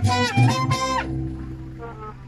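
Mariachi band of trumpets, guitars and guitarrón playing the final chord of a song. The chord cuts off sharply about a second in, and the low bass strings ring on and fade.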